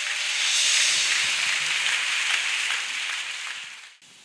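A congregation applauding together, dense clapping that swells in the first second and then dies away near the end.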